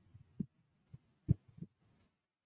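A few brief, soft, dull thumps, low in pitch and irregularly spaced, over near silence.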